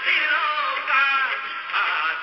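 A Hindi film song: a singing voice over music, with a thin, tinny sound lacking bass and top.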